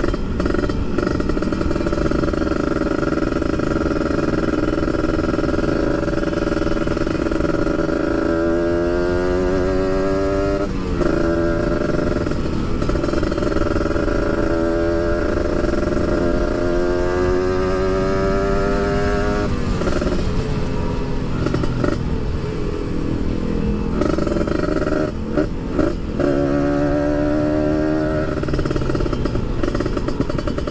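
Kawasaki Ninja 150 RR's two-stroke single-cylinder engine under way, its pitch climbing several times as it revs up through the gears, with short dips at the gear changes. Steady wind noise runs underneath.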